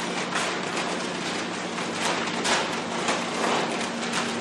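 Paper and plastic rustling and scraping as sealed bid envelopes and packages are torn open and stacks of documents are handled by several people at once, in uneven bursts over a steady low hum.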